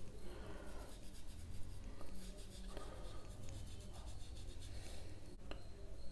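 Faint scratchy rubbing of a small paintbrush stroking back and forth on watercolour paper, blending wet paint in repeated short strokes, over a low steady hum.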